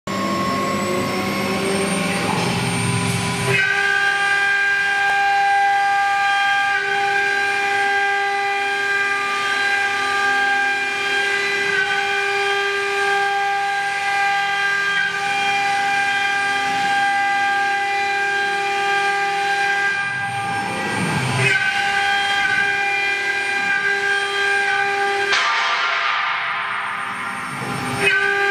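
CIMTECH CNC wood router's spindle running: a steady high whine of several even tones that settles to a fixed pitch about three and a half seconds in, broken by a short lower disturbance around twenty seconds in, with a rising hiss of cutting into the board near the end.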